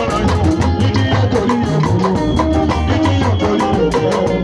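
A live band plays loudly through a PA: a guitar and a drum kit keep a steady rhythm while a man sings into a handheld microphone.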